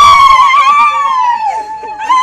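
A woman's high-pitched celebratory ululation: a loud, shrill, wavering cry held on one pitch, then sliding down about a second in and breaking off near the end.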